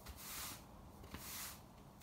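Broom sweeping a stable floor: two faint brushing strokes, one near the start and one a little past the middle.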